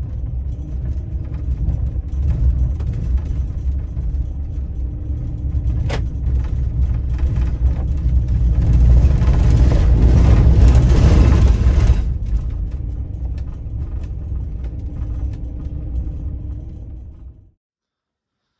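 Ram ProMaster camper van driving on an unpaved road: a steady low rumble of engine and tyres that grows louder for a few seconds in the middle, with one sharp click about six seconds in. It cuts off suddenly near the end.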